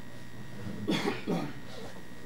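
A person coughing: two short coughs about half a second apart, about a second in, over steady room hum.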